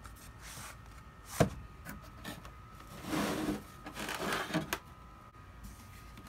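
Packets of sanding discs and a power sander being handled on a wooden shelf: a sharp knock a little over a second in, then rustling and scraping twice around the middle, the second ending in a knock.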